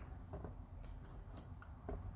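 Faint handling sounds of a folding knife being picked up off a bamboo mat: a few soft taps and one sharper click about one and a half seconds in.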